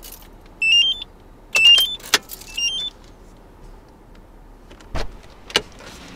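A short electronic chime of a few quick rising notes, sounded three times within about two and a half seconds, with a sharp click among them. Two more sharp clicks come near the end.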